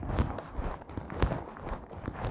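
Irregular soft knocks and rustling, several a second, over a low rumble.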